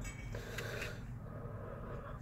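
Quiet car-cabin background with a low steady hum and a few faint small clicks about half a second to a second in.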